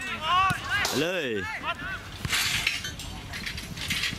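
Footballers shouting short calls to each other during play, several rising-and-falling shouts in the first second and a half, with a few sharp knocks in between.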